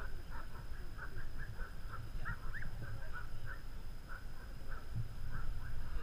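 Wind rumbling on the microphone, with a run of short, high chirps about two or three a second throughout.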